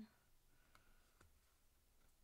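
Near silence, with two faint clicks of tarot cards being handled, about three quarters of a second and just over a second in.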